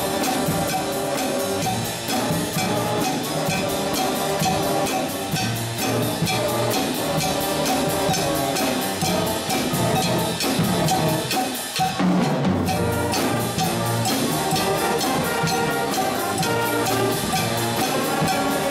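Live school concert band playing: saxophones, tubas, French horns and other brass over a drum kit keeping a steady beat. The band drops out briefly about twelve seconds in, then comes back in on a held low note.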